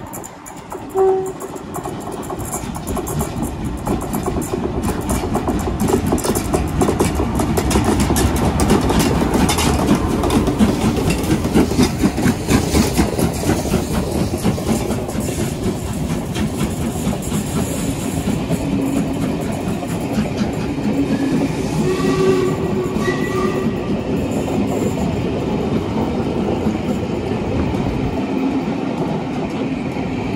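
A locomotive-hauled train runs through a station: a steam locomotive and diesel at its head, pulling a rake of coaches. A short warning blast comes about a second in. Then a rumble builds to a loud, steady run with the rhythmic clatter of wheels over the rail joints as the coaches pass.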